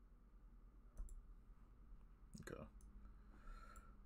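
A few faint computer mouse clicks over near silence, the clearest about a second in.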